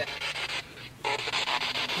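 Spirit box sweeping through radio stations: a rasping hiss of static, chopped into rapid, even pulses from about a second in.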